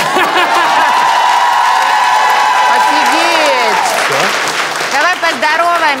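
A person's long, high-pitched squeal, held steady for about three and a half seconds and dropping away at the end, over clapping; short excited voices follow.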